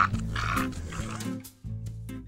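A bulldog panting close to a microphone, one or two breaths, over background music that grows quieter in the second half.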